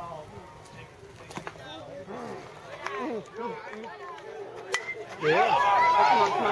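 A bat cracks against a pitched baseball with one sharp hit near the end. Spectators start shouting and cheering at once, loud over the quieter chatter before it.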